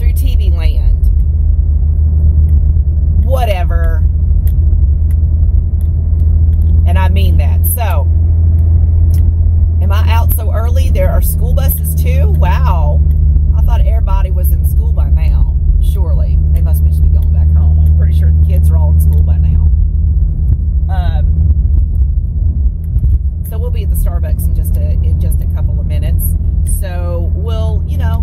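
Steady low road and engine rumble heard inside the cabin of a moving car.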